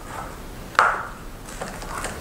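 A single hard knock about a second in, a plastic scientific calculator being set down on the paper on a desk, followed by faint handling.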